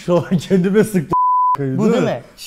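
Men's voices, cut about halfway through by a single steady high beep of under half a second that replaces the speech entirely: a censor bleep over a word.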